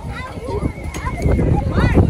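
People's voices outdoors, with a thin steady high tone through the first second; the voices and noise grow louder from about a second in.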